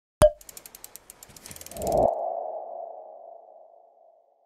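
Animated logo sting made of sound effects: a sharp click, a quick run of ticks, then a rising rush into a single ringing tone that fades out over about two seconds.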